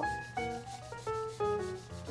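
Felt-tip marker scribbling back and forth on paper as a section of a drawing is shaded in, a quick rasping rub. Soft background music with held notes plays under it.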